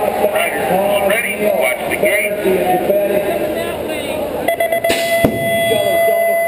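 Voices echoing in an arena for the first few seconds, then from about four and a half seconds a steady, held electronic buzzer tone, with one sharp snap partway through it.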